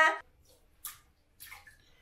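A woman's voice cuts off at the start, then faint, brief splashes and trickles of bathwater around a toddler sitting in a bath seat, a few separate small sounds about a second in and a little later.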